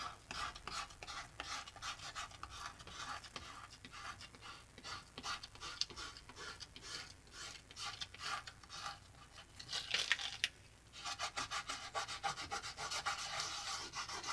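Fingertip rubbing dried masking fluid off cold-pressed watercolour paper: soft, quick, repeated scratchy strokes, with a busier run about ten seconds in and again near the end.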